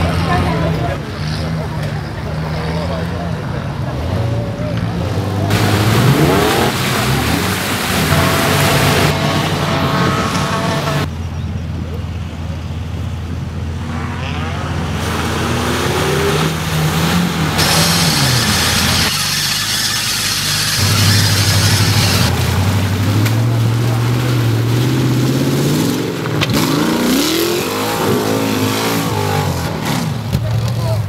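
Off-road 4WD vehicles' engines revving hard, the pitch rising and falling again and again as they climb dirt banks and plough through mud. The sound changes abruptly several times between short clips.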